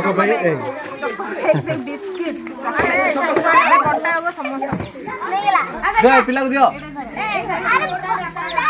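Many children's voices talking and calling out over one another, with adult voices mixed in: the noisy chatter of a crowd of children.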